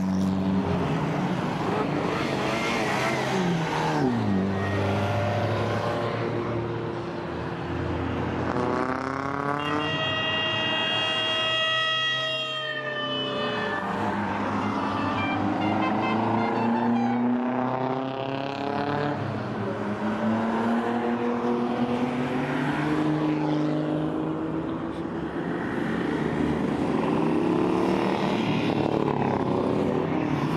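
Car engines revving and passing by, their pitch climbing again and again as they accelerate. About ten seconds in, a louder one falls in pitch as it goes past.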